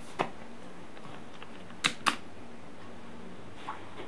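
Three sharp clicks from handling the small LED lights of a jewelry photography setup: one just after the start and two close together about two seconds in, over a faint steady hum.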